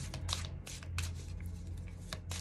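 A deck of divination cards being shuffled by hand: a quick, irregular run of light card flicks and slaps, over a steady low hum.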